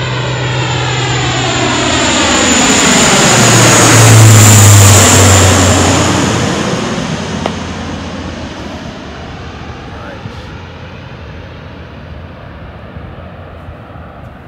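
Coast Guard HC-130 Hercules flying low overhead on its four turboprop engines. The drone swells to its loudest about four to five seconds in, drops in pitch as the plane passes, then fades steadily away.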